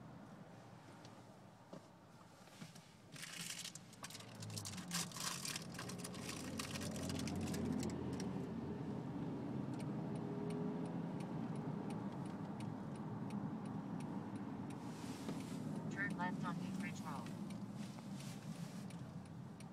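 Engine and road noise heard inside a Honda CR-V's cabin as it moves in traffic, growing louder over the first several seconds as the car picks up speed, then steady. A regular light ticking runs through the second half.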